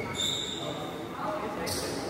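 Badminton shoes squeaking on the synthetic court mat during a doubles rally: one drawn-out high squeak in the first second, then a short crisp racket hit on the shuttlecock near the end. Voices chatter underneath.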